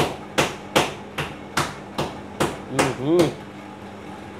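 A steady run of about nine sharp knocks or blows, evenly spaced at roughly two and a half a second, stopping a little after three seconds in.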